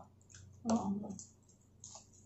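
Close-miked chewing of hard, crunchy fried pork belly: a few faint, sharp mouth clicks and crunches. A short spoken "ah, oo" about a second in is the loudest sound.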